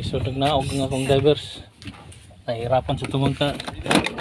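A man talking, with a short spoken 'oh, okay' near the end; only speech is heard.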